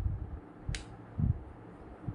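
A push button on a USB flight joystick clicking once, a short sharp click about three-quarters of a second in, followed by a low thump from the stick being handled.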